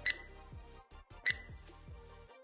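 Two short, high electronic beeps about a second apart from a countdown timer marking the last seconds of a drill interval, over faint background music.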